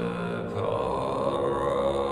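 Soundtrack drone music: deep, steady, chant-like tones held over a low drone, with the held notes shifting about half a second in.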